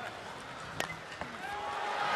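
A bat cracks sharply against a pitched ball a little under a second in, followed by a smaller tick, and the stadium crowd's noise swells toward the end as the ball carries to left field.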